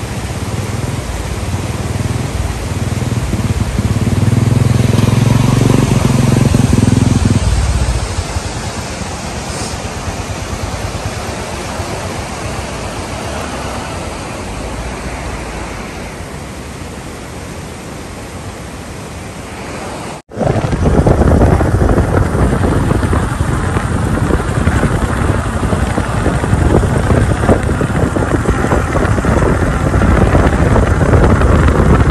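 Motorcycle engines with a steady rush of stream water; about three to eight seconds in, an engine grows louder and passes close. After a sudden cut about twenty seconds in, wind buffets the microphone of a moving motorcycle, with its engine underneath.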